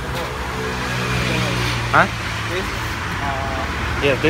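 Steady low hum of a running motor, with a short sharply rising voice sound about two seconds in and a brief murmur of voice near the end.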